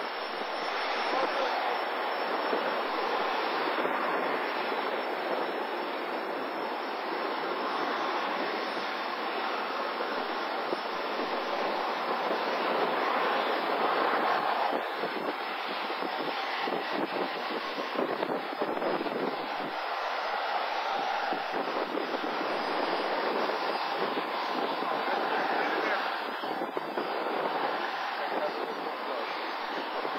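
Jet airliner's engines at takeoff power as it climbs away after lift-off: a steady rushing noise that swells and eases slowly.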